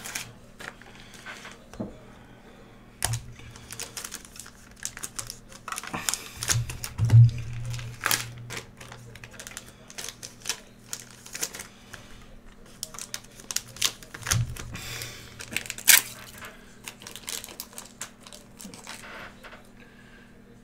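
Irregular clicking and tapping, like typing on a computer keyboard, with a few dull thumps on the desk in between.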